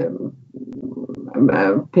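A woman's voice speaking, with a quieter, low-pitched drawn-out stretch in the middle before louder speech resumes near the end.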